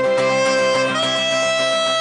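Acoustic band holding its closing chord: saxophone, melodica and acoustic guitar sustain notes together, one note stepping up about halfway through, and the chord breaks off at the end.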